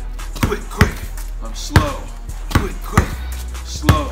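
Basketball dribbled on a concrete driveway: about six sharp bounces at an uneven pace, a rhythm dribble and a slow between-the-legs crossover.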